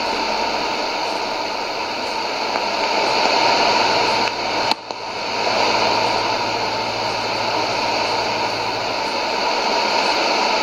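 Shortwave receiver's AM audio tuned to an unidentified open carrier on 9300 kHz: dead air, heard as steady static hiss with no programme. About halfway through there is a click and a brief dip in the hiss.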